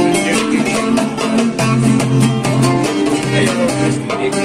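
Kabyle mandole and acoustic guitar playing an instrumental passage together, the mandole picking the melody over steadily strummed chords.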